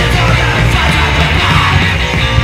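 Hardcore punk song playing: shouted vocals over fast distorted guitars and drums.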